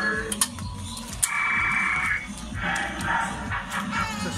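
Electronic beeps and a jingle from a coin-operated Combo boxing-and-kicking arcade machine registering a score, with a sharp knock about a second in.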